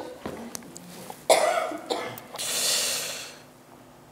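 A person coughing once about a second in, followed by a longer breathy rush of air.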